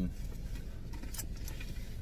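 Low steady hum of a car's interior, with two faint clicks a little past the middle.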